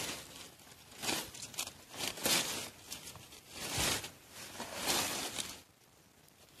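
Dry banana leaves and leaf litter rustling and crackling in irregular bursts about a second apart as a wire-mesh trap is pulled out from under them by hand.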